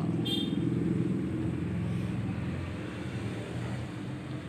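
A steady low mechanical hum, like an engine running, with a brief high chirp about a third of a second in.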